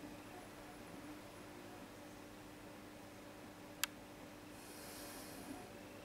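A man nosing and then sipping a glass of IPA: mostly quiet room with a faint steady hum, one sharp click a little before four seconds in, and a brief soft hiss about five seconds in.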